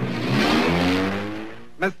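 Cartoon sound effect: a noisy crash fades out while an engine-like whine climbs steadily in pitch, like a car accelerating away, for about a second and a half.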